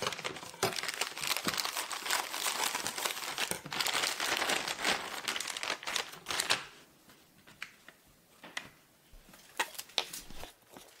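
Plastic packaging of fish-cake sheets crinkling as it is handled and opened, for about six and a half seconds. The sound then goes quieter, with a few soft taps.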